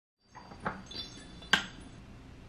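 Two sharp taps on the top of a Hatch Restore sunrise alarm clock as the alarm is switched off, the second tap louder, with faint high chiming tones between them.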